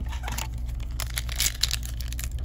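A shiny wrapper of a trading-card pack being handled and torn open by hand, with quick irregular crinkles and crackles that get denser about a second in.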